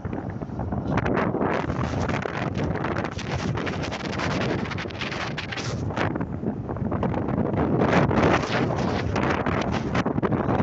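Wind rushing and buffeting over the microphone of a moving motorcycle, with the bike's running underneath; the noise swells in gusts a few times.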